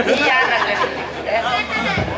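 Speech only: voices talking over one another in chatter.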